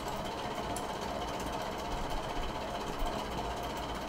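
Steady background hum and hiss of room noise under the recording, even throughout with no sudden sounds.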